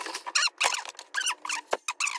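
A quick string of short, high-pitched squeaks with sliding pitch, about five a second.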